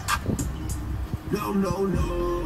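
Opening of a rap music video playing back through a screen recording: deep bass and a few sharp ticks start suddenly, and a voice comes in about one and a half seconds in.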